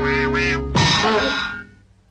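Donald Duck's squawking, quacking cartoon voice over background music. About three-quarters of a second in, the voice and music stop, and a short noisy burst follows that fades out to silence near the end.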